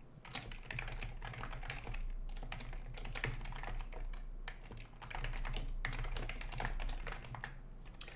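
Typing on a computer keyboard: a quick, irregular run of keystrokes as a sentence is typed, with a brief pause a little past the middle.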